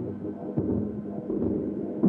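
Tech house track in a quieter passage: sustained synth tones over a low rumble, without the full driving beat.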